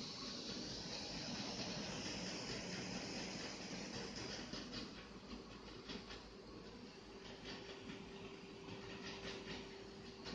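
Slim LG portable Blu-ray writer spinning a disc while burning it, a faint whirring hiss with light rapid ticking in the second half and a steady low tone joining about two-thirds of the way in.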